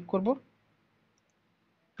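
A voice says 'click' at the start, then near silence.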